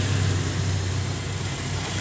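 Road traffic: motorcycle and car engines running as they cross the tracks, a steady low rumble.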